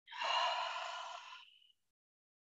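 A woman's long, breathy sigh out through the mouth that fades away after about a second and a half.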